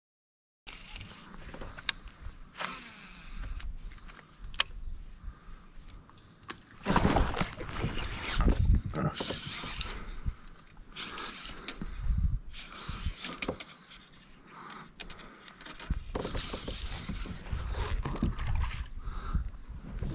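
Sounds aboard a fishing kayak on a river, picked up by a hat-mounted camera: water against the hull, with scattered clicks and several louder knocks and bumps from gear and rod handling. It opens with a brief silence.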